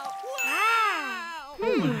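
Cartoon soundtrack of light chiming, bell-like dings with a wordless, voice-like sound that swoops up and then down in pitch, then drops again near the end.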